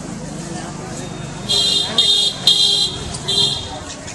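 A high-pitched vehicle horn honking four short times in quick succession, starting about a second and a half in, over a murmur of people's voices.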